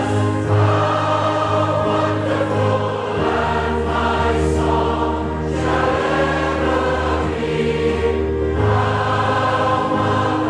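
A choir singing a hymn in long held chords, with the harmony changing about three seconds in and again near the end.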